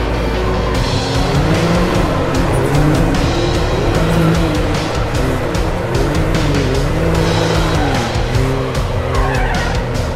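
Can-Am Maverick X3 side-by-side's engine revving up and down over and over, in quick repeated rises and falls, under background music.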